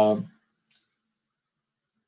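The tail of a drawn-out spoken 'uh', then silence broken by one faint, short click about two-thirds of a second in.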